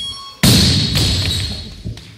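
Loaded barbell with rubber bumper plates dropped from overhead onto a wooden lifting platform: one heavy thud less than half a second in, a lighter knock about half a second later, and a long echo in a gymnasium.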